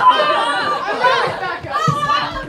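Loud overlapping voices, several people talking and exclaiming at once.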